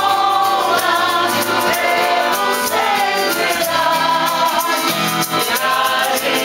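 A group of people singing together to an acoustic guitar, with short sharp percussive strokes keeping a steady rhythm.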